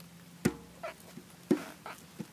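Two sharp knocks about a second apart, with fainter short squeaky sounds between them.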